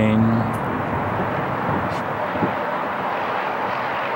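Steady, even roar of distant motor traffic.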